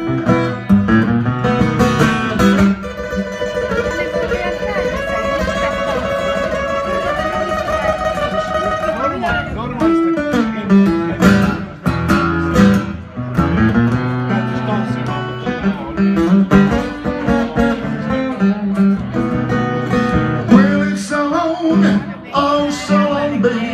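Solo acoustic guitar playing a blues passage between sung verses, with long held notes that bend and waver over strummed chords.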